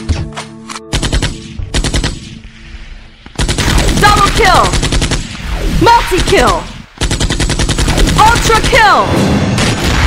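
Machine-gun fire sound effect: rapid automatic gunfire in two long bursts, the first starting a little over three seconds in and the second at about seven seconds, after a few scattered shots at the start. Swooping high tones run through each burst, and music plays underneath.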